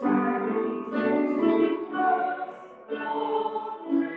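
A church singing group singing together, in phrases with short breaks between them, heard through a video call's narrow, thin audio.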